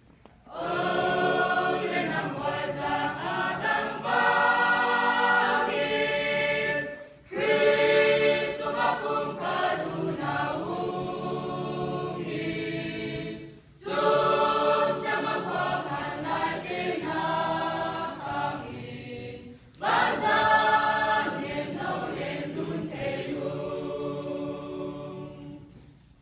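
Mixed church choir of men's and women's voices singing a hymn in four phrases of about six seconds each, with short breaks for breath between them.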